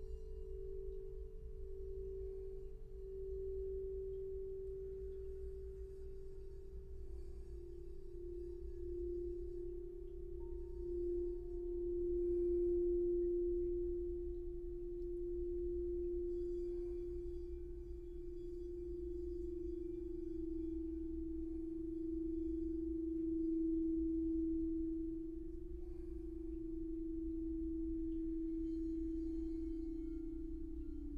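Crystal singing bowls ringing one long sustained tone that wavers in a slow pulse, its pitch stepping down twice as lower bowls take over, over a faint low hum.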